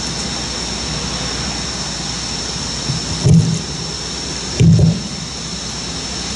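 Two dull, low thumps about a second and a half apart on the podium microphone, over steady outdoor background noise.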